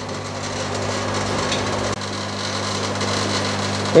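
Steady hum and hiss of aquarium air pumps and bubbling aeration in a fish shop full of tanks, with a low, even mains-pump drone beneath the noise.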